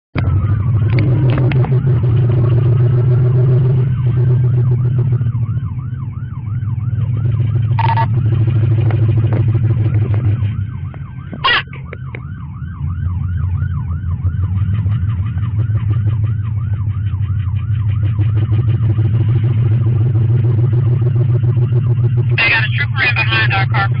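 Police car siren, first a rising wail and then a fast yelp of about three rises a second, over a steady low rumble of engine and road noise during a high-speed pursuit. Two sharp clicks about eight and eleven seconds in, and a burst of radio talk near the end.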